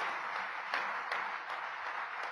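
Audience applauding: many overlapping hand claps at an even level.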